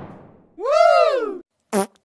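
Comic sound effect in a meme edit: one pitched sound, a little under a second long, that rises and then falls in pitch, followed by a short pitched blip near the end. It comes in over the fading tail of a crash.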